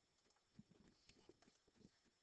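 Near silence: faint room tone with a few faint, scattered clicks.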